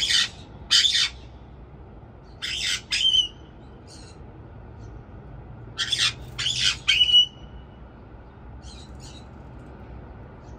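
White-bellied caiques squawking: loud, harsh, short calls in clusters of two, two and then three, a few ending in a brief clear whistled note, with a few fainter calls between.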